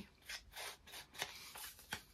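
Round ink blending tool brushed repeatedly along the edge of a paper card, applying distress ink: a series of faint soft swishes, about three a second.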